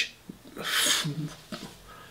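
A man's breathy hiss about half a second in, followed by a brief low mumble: a stumbling, half-voiced attempt at the tongue twister "Irish wristwatch".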